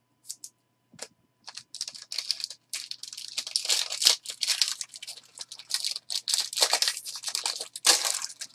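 A foil trading-card pack wrapper being torn open and crinkled in the hands: a few light clicks, then dense, high-pitched crackling from about two seconds in.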